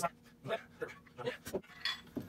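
Short, scattered knocks and clinks of steel parts being handled as a 1½-inch shim punch is fitted and aligned in its two-plate steel punch block, with a sharper knock about one and a half seconds in and a brief metallic ring near the end. A man's faint vocal sounds are mixed in.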